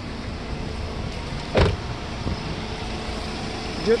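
A car engine idling with a steady low rumble, and one short, sharp sound about a second and a half in.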